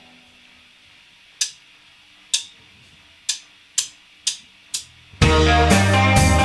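A drummer's count-in of six drumstick clicks, two slow and then four at double speed. About five seconds in, the full band comes in together on drum kit and guitars.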